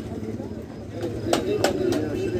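Background murmur of voices at a busy open-air market, with three short sharp knocks in the second half.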